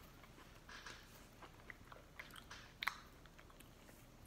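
Faint chewing and small crunches of Golden Grahams S'mores Treats cereal bars being eaten, with scattered light clicks and one sharper click about three seconds in.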